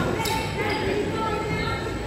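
A volleyball hits the hardwood gym floor once, about a quarter second in, against the chatter of voices echoing around a large gymnasium.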